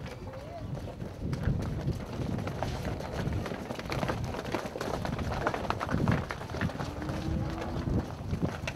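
Herd of Holstein-Friesian dairy cows walking out across a concrete yard, many hooves clattering in an irregular stream of knocks and clicks.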